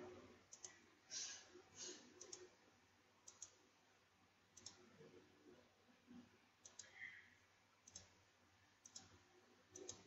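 Faint computer mouse clicks, scattered irregularly at roughly one a second, over quiet room tone.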